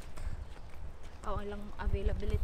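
Low, irregular thumps, then a voice saying "oh" just over a second in.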